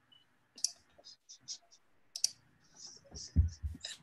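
Light clicks from a computer keyboard and mouse, about a dozen scattered irregularly, picked up by a laptop microphone on a video call while a screen share is being started. A few low, muffled knocks come near the end.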